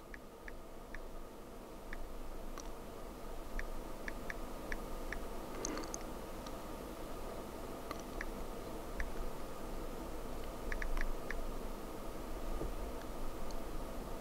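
Faint, irregular light taps of fingers typing on the touchscreen keyboard of an unfolded Samsung Galaxy Z Fold 2, over a steady low hum.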